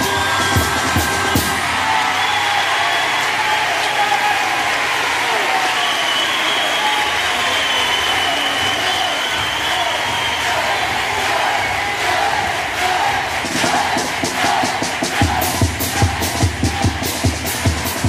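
A theatre audience applauding and cheering a children's carnival comparsa. About two-thirds of the way through, a bass drum and snare strike up a steady beat under the applause.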